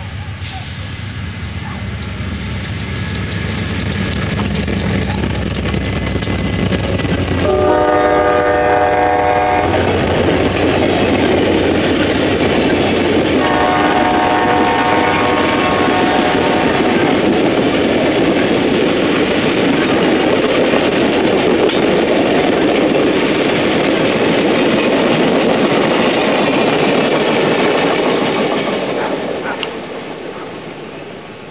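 Amtrak Coast Starlight passenger train approaching and passing close by. The diesel locomotive's engine rumble builds, and its air horn sounds twice: once for about two seconds, and again about four seconds later for about three seconds. Then comes the steady clatter and rush of the double-deck Superliner cars rolling past, fading near the end.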